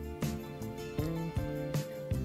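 Soft background music: a few notes, each starting sharply and fading, about every half second.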